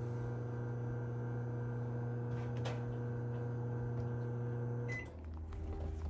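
Microwave oven running on battery power through an inverter, a steady electrical hum that cuts off abruptly about five seconds in.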